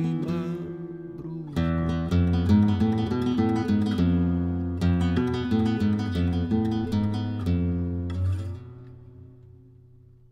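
Instrumental passage of plucked acoustic guitar over low bass notes, with a brief pause about four seconds in. The playing stops and a last held note fades away over the final second and a half.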